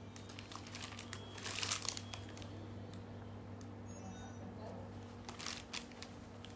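Two brief bursts of rustling and crinkling, the louder about a second and a half in and another near the end, over a steady low hum.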